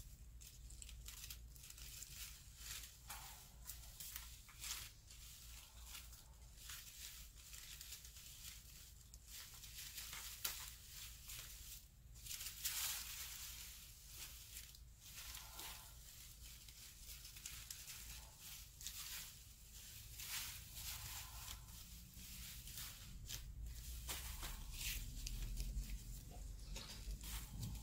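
Fringed white paper rustling and crinkling in irregular short bursts as it is handled and wound around a bamboo stick.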